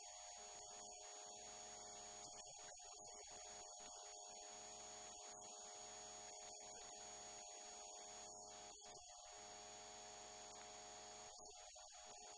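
Near silence: a faint, steady electrical mains hum made of several constant tones.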